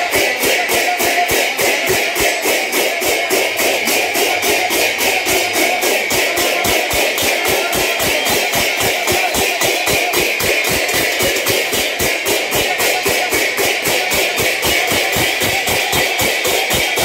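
Many pairs of large brass hand cymbals clashed together in a fast, steady, even beat.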